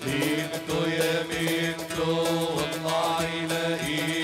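Live Middle Eastern wedding music over a PA: a singer holding long, drawn-out notes over steady accompaniment with a regular drum beat.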